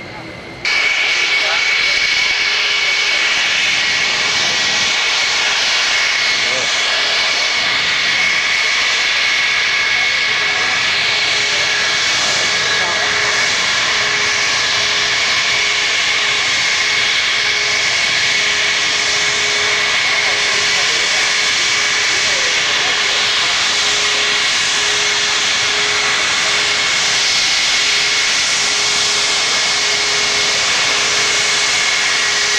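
Concorde's Olympus 593 turbojets running with a steady whine, a lower hum beneath it and a broad rush of jet noise, heard close up. The sound cuts in abruptly about a second in and then holds steady.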